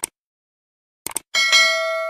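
Sound effect of mouse clicks and a notification bell: a quick double click, another double click about a second in, then a bright bell ding struck twice close together that rings on and slowly fades.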